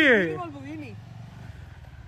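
Bajaj Dominar single-cylinder motorcycle engine running at low speed as the bike rolls slowly, a steady low rumble. A voice calls out with a falling pitch over the first half second.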